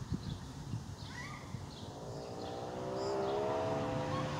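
A motor vehicle's engine hum rising in about halfway through and holding steady as it passes, over faint high chirps.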